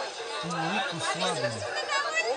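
Crowd chatter: many people talking at once, with one voice standing out above the rest through the middle of the clip.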